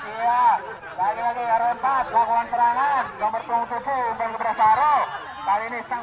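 Speech only: a raised voice talking almost without a break.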